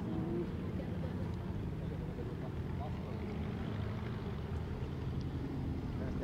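Klemm 35D light aircraft's inverted four-cylinder engine droning steadily at reduced power on landing approach, heard from the ground as a low, even rumble.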